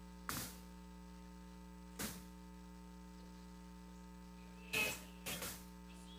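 Steady electrical mains hum, with a few faint short scratches and squeaks from a dry-erase marker writing on a whiteboard: one near the start, one about two seconds in, and a small cluster near the end.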